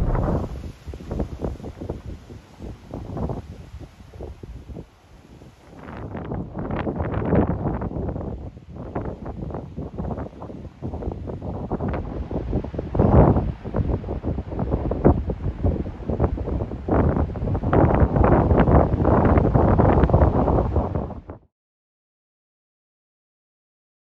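Gusty wind buffeting the microphone, rising and falling in rough, irregular blasts. It cuts off suddenly near the end.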